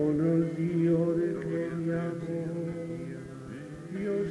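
A congregation chanting together in long held notes, several voices at different pitches, changing slowly from one note to the next.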